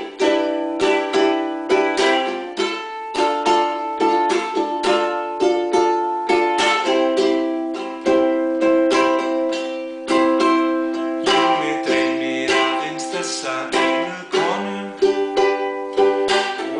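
Tanglewood ukulele strummed in a quick, steady rhythm, changing chord every few seconds.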